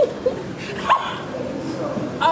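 A woman's laughing squeals: a short high cry at the start and a sharp rising squeal about a second in, heard in a large echoing hall.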